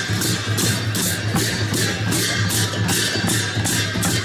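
Music for the Sakela dance: a double-headed barrel drum (dhol) played in a steady rhythm, with bright strikes about three times a second.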